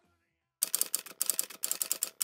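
Typewriter sound effect: rapid runs of key strikes that start about half a second in, grouped with short pauses between them.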